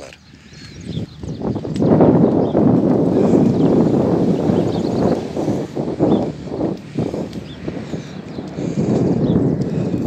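Footsteps on a wooden boardwalk, loud and continuous from about two seconds in, with many knocks on the planks.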